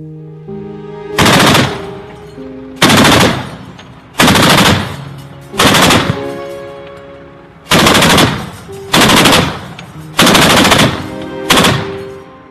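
Bursts of gunfire from a tripod-mounted heavy automatic weapon: eight loud, short bursts about one and a half seconds apart, each trailing off in echo, over soft background music.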